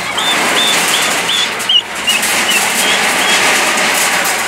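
Excavator at work demolishing corrugated iron shacks, a steady dense clatter and rumble of machinery and metal. Over it runs a string of short high squeaks, about three a second, which stop late on.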